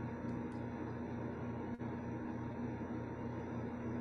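Steady low hum with hiss: the background noise of an open microphone on a video call, with a brief dropout about two seconds in.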